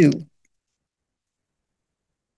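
A woman's voice finishing a sentence in the first quarter second, then dead silence for the rest.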